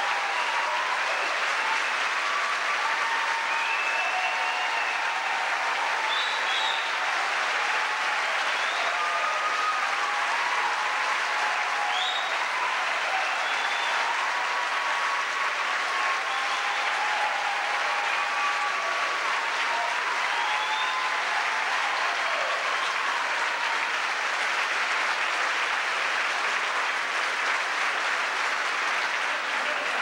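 Large audience applauding steadily, a dense, sustained clapping.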